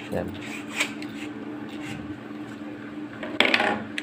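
Lengths of PVC electrical conduit and a spring bender being handled on a wooden table: a few light clicks, then a louder hollow clatter of pipes knocking together about three and a half seconds in, over a steady low hum.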